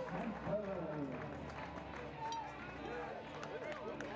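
Ballpark crowd chatter, many spectators' voices overlapping at a moderate level.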